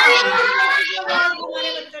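A group of children chanting aloud together in a sing-song chorus, reading a word out in unison, heard through a video call.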